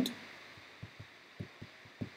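Faint, soft taps and knocks of a pen on a tablet screen while a word is handwritten, several short light thuds from about a second in, over a low steady hiss.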